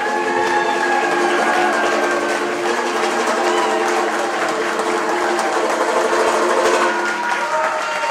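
Audience applauding, with a few voices calling out over the clapping, while the last banjo chord rings out underneath and fades over the first few seconds.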